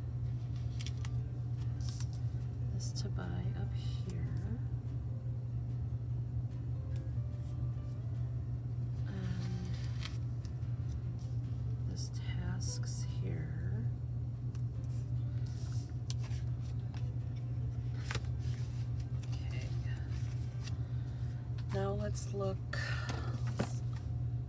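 Paper stickers being peeled from a sticker sheet and pressed onto planner pages: short scattered rustles, crinkles and light taps over a steady low hum, with a little quiet murmuring.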